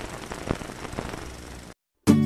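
Crackling static-like noise, a glitch sound effect under a title card, with scattered faint clicks. It fades slightly and then cuts off abruptly to silence near the end.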